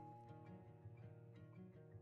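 Faint background music of plucked guitar-like notes.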